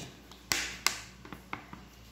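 Two sharp clicks in quick succession about half a second in, then a few fainter ticks, from handling a plastic liquid-detergent bottle and a metal spoon.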